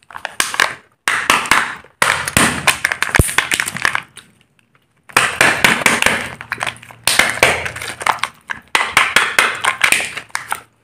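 Kinder Joy eggs' plastic shells and foil seals handled and peeled close to the microphone: loud crinkling and crackling in about five bursts, each stopping suddenly before the next.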